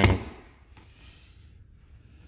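Faint handling noise as a rubber air brake hose with its crimp collar is seated in the jaws of a hydraulic hose crimper, with a few light ticks. The crimper is not yet being pumped.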